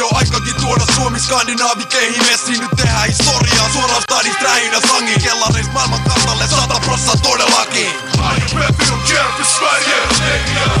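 Hip hop track: a male rapper's verse in Finnish over a beat with a deep bass line, the bass dropping out for short breaks a few times.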